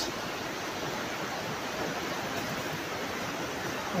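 Steady rush of river water pouring over a weir, an even hiss with no breaks.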